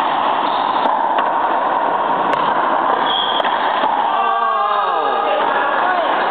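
Racquetball doubles rally: a few sharp pops of the ball off racquets and the court walls over a loud, steady hiss. About four seconds in, a pitched sound slides down in pitch for about a second.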